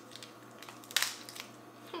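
Boiled crab legs cracked and pulled apart by hand: one sharp shell crack about a second in, with a few faint clicks of shell around it.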